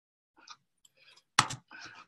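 A few faint clicks, then a sharper, louder click about one and a half seconds in.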